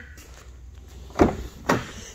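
Rear passenger door of a 2014 Ford Escape SE being opened: a latch clunk a little past halfway through, then a second, shorter knock about half a second later as the door swings open.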